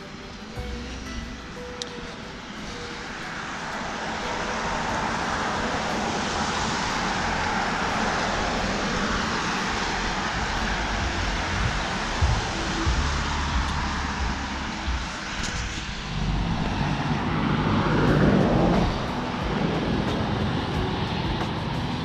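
Road traffic passing on the street alongside: a broad noise that swells over the first few seconds, holds, dips briefly and then swells again near the end.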